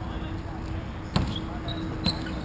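A single sharp clack of a hockey impact about a second in, over steady low background rumble, with a few brief faint high chirps after it.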